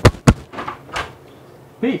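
A wooden kitchen door being opened: two loud, sharp knocks close together, then a few lighter knocks.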